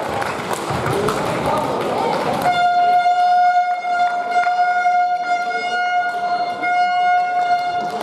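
A hall's murmur of voices, then, about two and a half seconds in, a single steady horn-like tone that holds one pitch for about five seconds before stopping.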